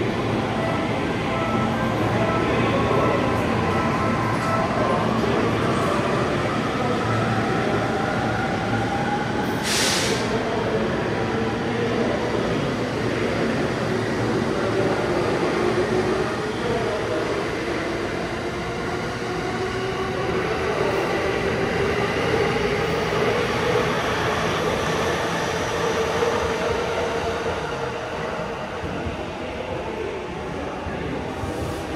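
Electric commuter trains moving through the station platform, their traction motors whining in a tone that glides down early on and then rises through the rest, over steady running noise. There is a short sharp hiss about ten seconds in.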